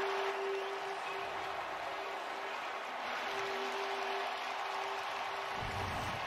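Stadium crowd cheering and applauding a sack, a steady wash of crowd noise with a faint held tone coming and going through it.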